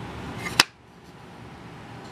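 A small wooden lid on brass hinges swung shut onto a wooden box, landing with a single sharp click about half a second in, over faint steady background noise.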